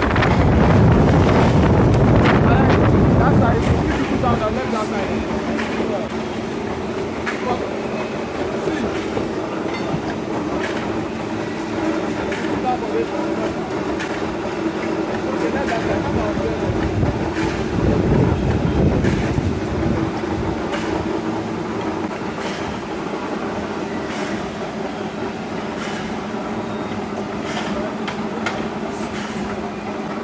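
Wire-mesh welding machine running in a workshop: a steady hum with repeated sharp clicks and clanks from its working strokes, louder for the first few seconds and again about midway.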